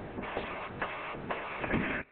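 Crackling, rustling noise on an open teleconference phone line while a panelist fails to answer, with irregular short crackles; the line drops out just at the end.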